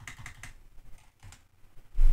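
Computer keyboard typing: a handful of separate, irregular keystrokes.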